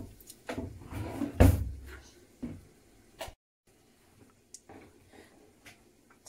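Kitchen handling noises while working at a dough board: a few light knocks and clatters, with one louder thump about one and a half seconds in, then only faint ticks.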